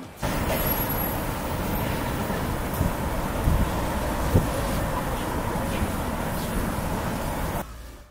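Busy city road traffic: a steady rumble of passing cars and a bus with a few louder swells, cutting off abruptly near the end.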